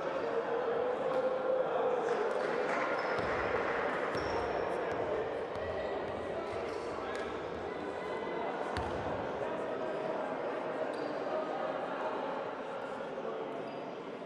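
Echoing gym ambience: indistinct voices around the hall, with a few basketball bounces on the hardwood floor, a handful of thuds about three to five seconds in and again near nine seconds.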